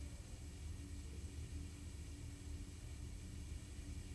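Faint room tone: a steady low hum with a light hiss and no distinct events.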